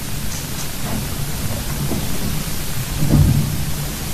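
An audience applauding steadily, a dense even patter of clapping, with a low thump about three seconds in.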